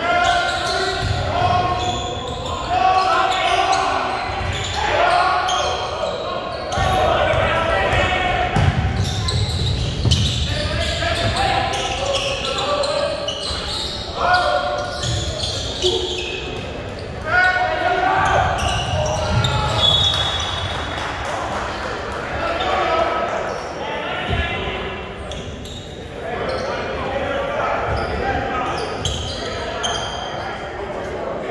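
A basketball game in a large, echoing gym: voices shouting and calling on the court while a basketball bounces on the hardwood floor.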